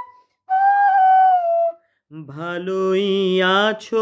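Bamboo flute (bansi) playing one held note that dips slightly in pitch as it ends. About two seconds in, a man's voice sings a short phrase of the melody.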